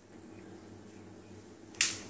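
A stainless steel pot set down on the glass top of a portable induction cooktop: one short, sharp click near the end, over a faint low hum.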